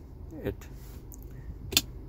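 A single sharp click from the electronic parking brake switch on the car's centre console, near the end.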